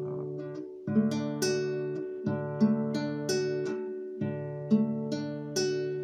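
Acoustic guitar playing a D major chord, picked string by string from the open fourth string down to the first, with the notes ringing over one another. The pattern repeats about three times.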